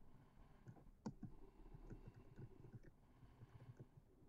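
Faint, irregular clicks of a computer keyboard being typed on, with one louder keystroke about a second in.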